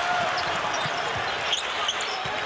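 Steady arena crowd noise, with a basketball being dribbled on the hardwood court.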